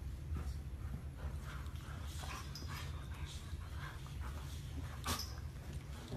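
Soft whimpers and snuffles from a dog nuzzling a small monkey at play, over a steady low hum, with one sharp click about five seconds in.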